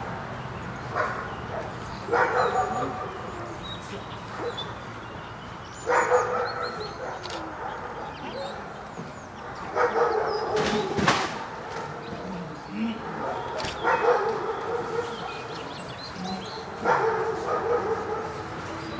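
A dog barking in short bouts every few seconds, with a couple of sharp cracks near the middle.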